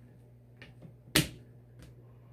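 A single sharp plastic click about a second in, with a couple of faint ticks around it, from the plastic T-square alignment rulers being handled and set down on the shirt.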